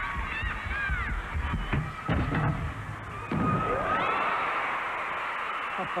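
Arena crowd cheering, with shrill whistles and calls rising and falling in pitch; the cheering swells suddenly about three seconds in and stays loud.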